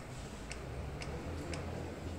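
Steady, evenly spaced ticking, about two sharp ticks a second, over a low steady hum.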